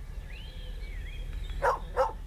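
A small dog barking, two short barks near the end, over faint bird chirps.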